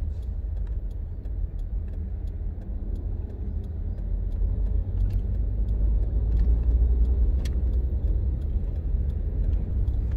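Steady low rumble of a moving car's engine and tyres, heard from inside the cabin, swelling a little about six to seven seconds in. A few faint light clicks sound over it.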